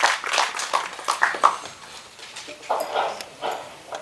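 Speech only: a man's last few words over a microphone, then a quieter stretch with faint, voice-like sounds.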